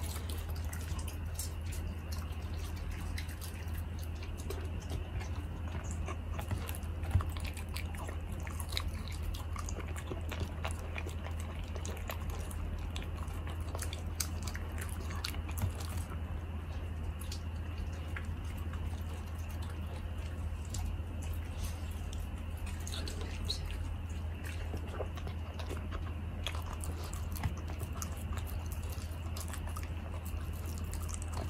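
Bernese mountain dog puppy chewing slices of steak, a run of many irregular small clicks and smacks from its mouth on the meat, one louder click about seven seconds in. A steady low hum lies underneath.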